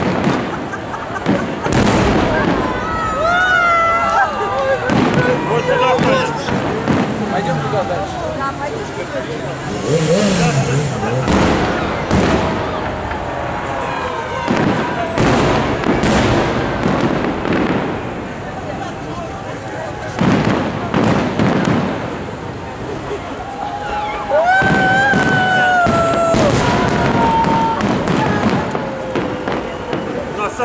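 A fireworks salute with shells bursting overhead in a long run of bangs, and the voices of a crowd of onlookers heard among them, loudest in a few drawn-out shouts.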